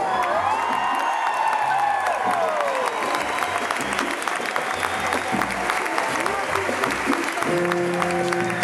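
Live concert audience applauding, with a singer's amplified voice sliding down over the clapping in the first few seconds. Near the end the band starts playing held notes.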